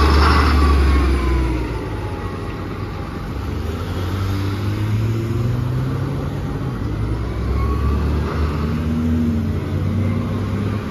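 2009 NABI 40-LFW diesel-electric hybrid transit bus pulling away, its engine loudest in the first couple of seconds, with a faint whine gliding in pitch as it moves off. Passing cars' engines and tyres rise again near the end.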